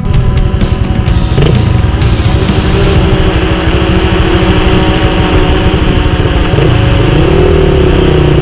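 Enduro dirt bike engine running loud and close, its pitch swinging up and down in revs about a second and a half in and again near the end.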